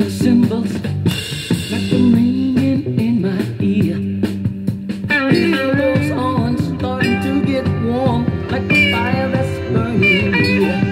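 A northern soul 7-inch single playing on a turntable: bass and guitar over a steady beat, with a higher melody line coming in about halfway through.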